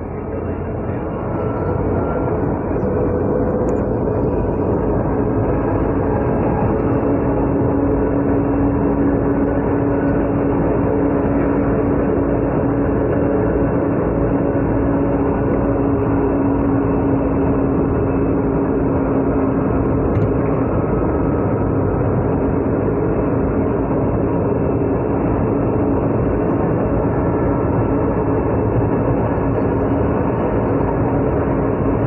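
MRT-3 light-rail train car running, heard from inside the crowded cabin: a steady rumble and rail noise that builds over the first couple of seconds, then holds, with a steady hum through much of it.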